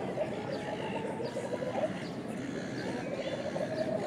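Indistinct voices of people talking in an outdoor plaza, with no words clear.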